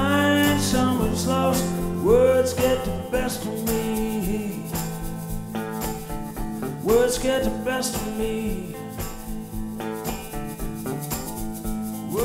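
Live acoustic blues band: a resonator guitar played with a slide, its notes gliding up into long held pitches, over a steady drum accompaniment.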